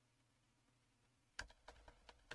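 Near silence, then about a second and a half in a quick run of about five computer keyboard key presses as code is edited.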